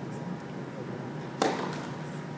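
A tennis ball struck once by a racket, a sharp pop about one and a half seconds in with a short echo in the hall, over a steady room hum.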